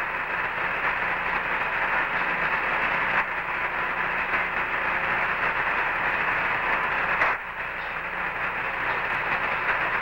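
Steady radio static from the Apollo 11 lunar-surface voice downlink, thin and narrow-band like a voice radio channel, with a faint hum. A few clicks break it, with a short drop in level about seven seconds in.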